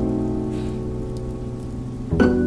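A held musical chord slowly fading, with the sound of rain falling and faint drops over it.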